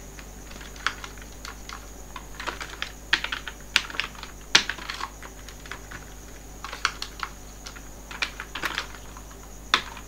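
Computer keyboard typing: irregular key clicks in short bursts, with brief pauses between them.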